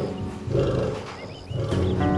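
A male lion gives a short vocal sound about half a second in while sinking under anaesthetic, over soundtrack music that fades down and comes back near the end.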